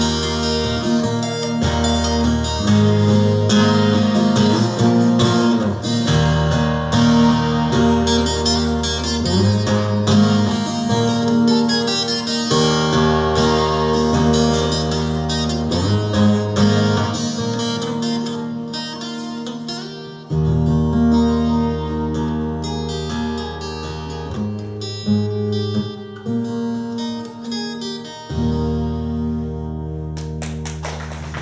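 Twelve-string acoustic guitar played solo, a picked instrumental passage of ringing chords that changes every second or two. Near the end it settles on a final chord left to ring.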